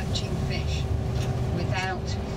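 Steady low rumble of a bus's engine and tyres, heard from inside the cabin as it drives, with a voice speaking briefly near the end.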